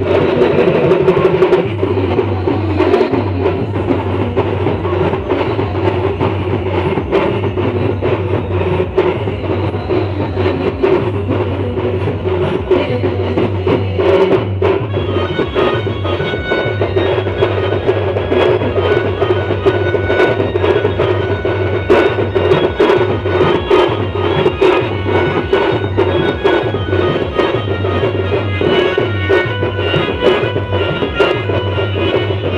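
Live Adivasi band music played loud through a stack of PA loudspeakers: a steady drum beat and a pulsing bass line run under a melody, without a break.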